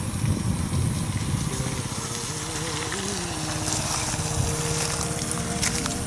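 A low rumble with wind noise, typical of a moving vehicle. A wavering melody line from background music comes in about a second and a half in.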